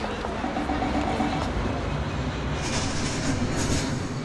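A loud, steady rumbling and clattering noise, with a few sharp clicks and hissy bursts in the last second and a half.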